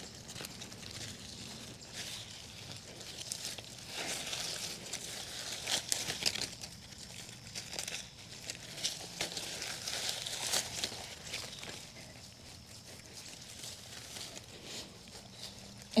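Gloved hands packing dry soil around a transplanted hydrangea's root ball: irregular soft rustling and crinkling, with leaves brushing against the hands and arms.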